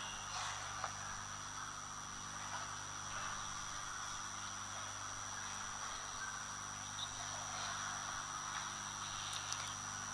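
Quiet room tone during a silent pause: a steady low electrical hum with a faint hiss and a thin, steady high whine, broken only by a couple of faint ticks.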